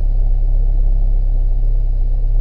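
Mitsubishi Eclipse's 1.8-litre 4G37 four-cylinder engine idling steadily, heard inside the cabin. It runs through an exhaust that the owner takes for a scooped-out muffler.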